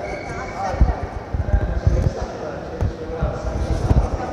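Footsteps on a hard polished stone floor at a walking pace: dull low thuds, about two or three a second, with faint voices in the background.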